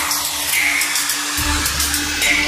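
Dubstep music in an 8D-panned mix: a held synth note and a hissing noise layer play over a brief bass drop-out, and the deep sub-bass comes back in about one and a half seconds in.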